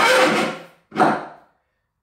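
Handling noise as the skeleton's pelvis and spine are lifted and fitted onto a support bar. Bone and bar rub and scrape in two noisy bursts, the second shorter, and then the sound drops out completely.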